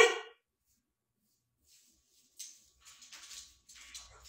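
A voice trailing off in the first moment, then near silence, with a few faint, short rustles in the last second and a half.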